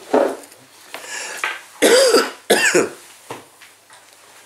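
A man coughing and clearing his throat several times in short bursts, loudest about two seconds in.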